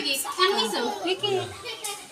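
Children's voices chattering and playing, mixed with indistinct talk.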